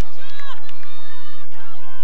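Sideline crowd at a hurling match shouting, several voices overlapping in short calls.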